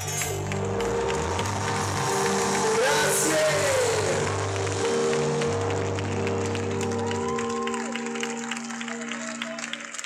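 A live band's held closing chord rings out over a cheering, applauding crowd, with shouts and whoops. The low notes of the chord stop about eight seconds in, and the clapping carries on.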